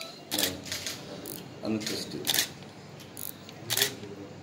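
Quiet, broken speech: a few soft words and hissing 's'-like sounds, separated by pauses.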